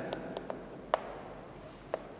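Chalk writing on a chalkboard: a handful of light taps and short scratches as the words are written, the sharpest tap about a second in.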